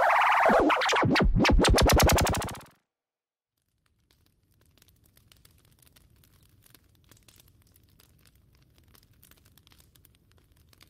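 The song ends on a synthesizer effect whose pitch bends and sweeps, then breaks into rapid pulses that get faster and cut off suddenly about two and a half seconds in. After a moment of silence comes the faint crackling and popping of a wood fire burning.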